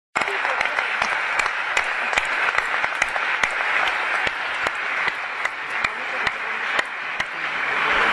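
Audience applauding: many hands clapping in a dense, irregular patter, with a few sharper individual claps standing out.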